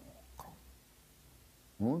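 A man's storytelling voice pausing mid-sentence. There is a short click about half a second in, then a quiet hush with a faint low hum, and his voice resumes near the end.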